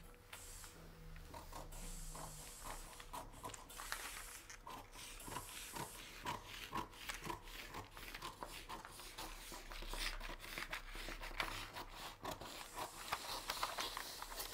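Scissors cutting through pattern paper: a quiet, irregular run of snips and crackles, with the paper rustling as it is turned. The snips come faster from a few seconds in.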